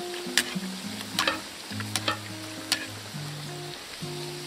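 Potato dumplings deep-frying in hot oil in a cast-iron kazan: a steady sizzle broken by a few sharp clicks, as oil is spooned over them with a skimmer.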